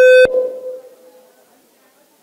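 PA system feedback: a loud, steady, mid-pitched howl from the microphone and speaker, harsh at full strength, that cuts off abruptly with a click right at the start, leaving a brief echo in the hall that dies away within a second.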